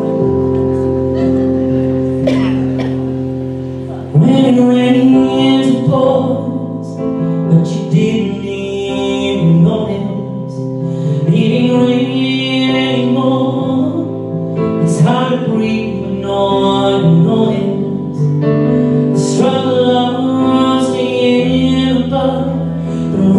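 Male singer performing a ballad live into a handheld microphone over held accompaniment chords; the chords play alone at first and the voice enters about four seconds in.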